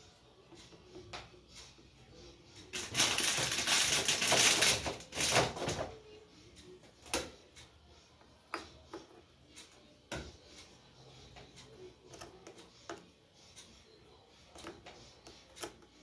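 Handling noise while chocolate biscuits are laid on cream in a glass dish: a loud burst of rustling, crinkling noise lasting about three seconds, then scattered light clicks and taps.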